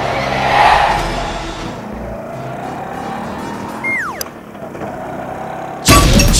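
Film soundtrack sound effects: a rushing noise that swells and fades in the first second, a steady rumbling haze, and a short falling whistle about four seconds in. A loud hit lands just before the end.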